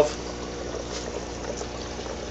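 Aquarium air pump running, pushing air through tubing into the salt water of a DIY brine shrimp hatchery bottle: a steady trickling bubble noise over a faint low hum.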